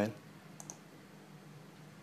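Computer mouse button clicked, two quick clicks close together about half a second in, over faint room hum.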